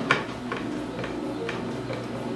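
Hand screwdriver driving a Phillips-head wood screw into a plywood panel, with a sharp click about every half second.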